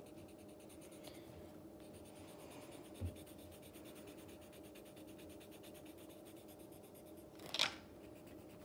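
Faint, rapid back-and-forth scratching of an erasable colored pencil shading on paper, with a soft knock about three seconds in and a short louder noise near the end.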